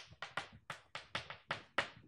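Chalk tapping against a blackboard while writing: a quick, uneven run of about ten short, sharp strokes.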